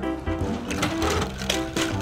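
Small plastic toy monster trucks rattling as they roll down a plastic playground slide and clatter onto the pavement, a quick run of clicks over steady background music.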